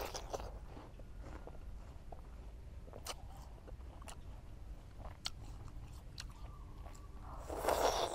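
A crisp, juicy green wax apple being bitten and chewed close to the microphone: scattered soft crunches while chewing, then a louder crunching bite near the end.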